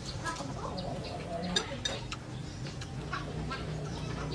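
Chickens clucking, with a few sharp clicks over it, the loudest about one and a half seconds in.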